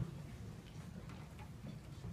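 Quiet hall before the band plays: a faint low hum with a few small clicks and knocks as the young players ready their instruments, the sharpest click right at the start.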